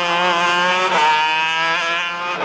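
Racing go-kart engine running hard at high, nearly steady revs, with a slight dip in pitch about halfway.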